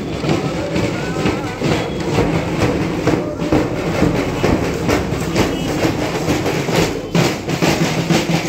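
Children's marching drum band of snare drums and bass drums beating a steady marching rhythm, with many sharp stick strikes.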